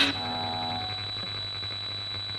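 Steady high-pitched electronic whine over a low hum, with a short struck sound ringing out briefly at the start: the noisy lead-in before a rock track begins.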